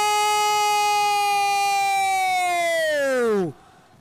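A man's long, drawn-out shout held on one high pitch for about three seconds, sliding down as it ends: a commentator's goal call.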